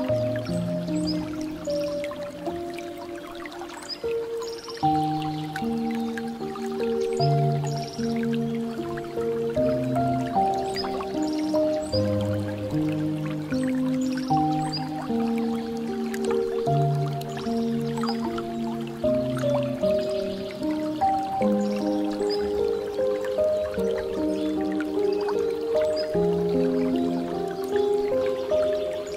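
Calm piano music with slow, held notes, layered over water dripping and trickling from a bamboo fountain spout.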